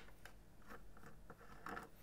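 Faint, scattered clicks of a screwdriver turning out small screws from a circuit board.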